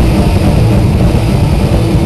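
Live thrash metal band playing a loud, low, distorted rumble.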